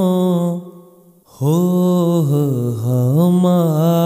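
A solo voice singing a devotional shabad in a slow, melismatic style. A held note fades out about half a second in, and after a brief silence a new phrase begins on "ho" with gliding, ornamented pitch.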